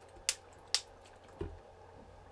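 A sip of water being drunk: two short wet clicks of lips and mouth, then a soft low gulp about a second and a half in.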